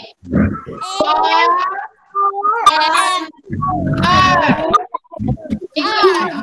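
Young children's high-pitched voices calling out over an online video call: several short utterances with brief pauses between them.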